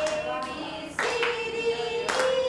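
Hand claps, about one a second, keeping time to a song, with a sung note held between the claps.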